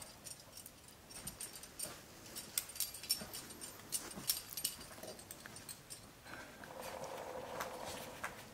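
Metal climbing gear, carabiners and cams racked on a harness, clinking and jangling in a run of light clicks as the gear is handled. Near the end a drawn-out whining sound comes in over it.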